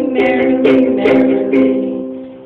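Ukulele strummed on one held chord, about four strums roughly two a second, the chord fading near the end.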